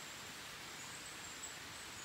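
Faint ambience of rainforest at night: a steady low hiss with a thin, high insect drone running through it.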